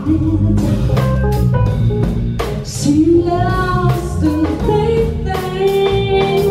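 Live jazz band playing: a woman singing held, gliding notes over stage piano, bass guitar and drum kit keeping a steady beat.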